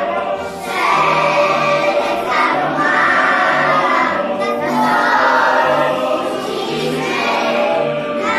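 A group of preschool children singing a patriotic song together.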